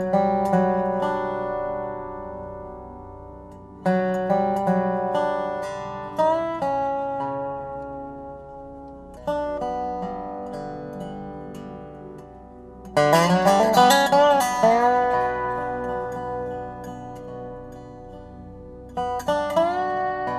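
Dobro-style resonator guitar played lap-style with a slide bar: slow plucked notes and chords that ring and fade, several of them slid up into pitch. About two-thirds of the way through comes a quicker, louder run of sliding notes.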